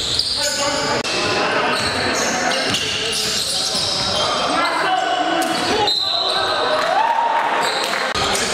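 Basketball being bounced on a hardwood gym floor during play, with game noise echoing in the gymnasium.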